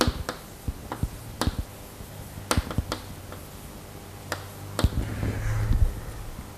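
Chalk tapping and scraping on a blackboard while writing: a string of sharp, irregularly spaced clicks.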